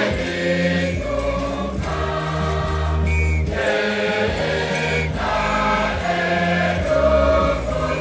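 A choir singing a hymn in harmony, over sustained low notes that shift about once a second.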